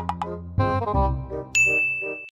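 Light background music of short plucked notes, then about one and a half seconds in a bright, held "ding" sound effect that rings for under a second.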